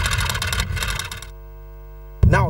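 A rapid run of sharp clicks, a typing-style sound effect under title text, stops about a second in and gives way to a low steady hum.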